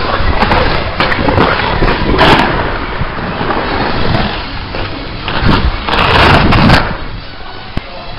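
Ice skate blades scraping and gliding over rink ice in repeated strokes, with louder scraping surges about two seconds in and again around six seconds in.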